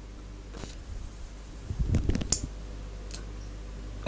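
Small Tesla coil running with a steady low mains hum. About halfway through there is a short cluster of crackles and sharp clicks as a glass light bulb is brought onto the coil's top terminal and the discharge arcs to it.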